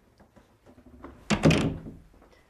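A single loud thud about a second and a half in, against a quiet room.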